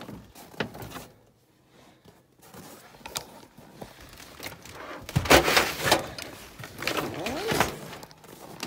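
Handling noises in a pickup's rear cab: a few clicks and knocks, then louder scraping and bumping as a plastic upright vacuum cleaner and other items are pulled off the back seat past the open rear door.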